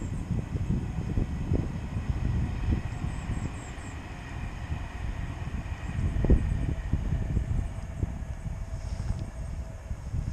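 Wind buffeting the camera microphone: a gusty low rumble that rises and falls, loudest about six seconds in.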